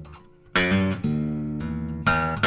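Solo acoustic guitar playing slow, sparse notes. A held note dies away almost to silence, then a sharply plucked chord comes about half a second in and another about a second in, both left to ring.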